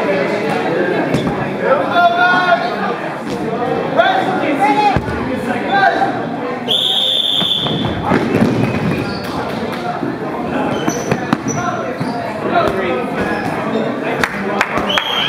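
Many voices chattering and shouting in a large gym hall, then one short, shrill referee's whistle blast about seven seconds in that starts the dodgeball rush. After it, rubber dodgeballs knock and bounce on the wooden floor.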